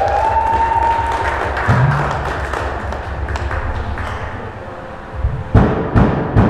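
Live rock band playing: a long held note bends up and sustains over a fast, even kick-drum pattern. The band thins out and drops in level about four seconds in, then crashes back in with loud drum hits near the end.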